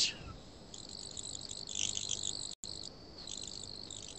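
Faint high-pitched chirring over low background hiss, with the audio cutting out for an instant about two and a half seconds in.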